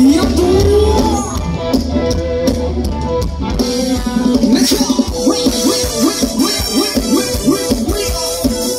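Live Thai ramwong band music with a drum kit keeping a steady beat; in the second half a melodic instrument plays a run of short rising notes, about three a second.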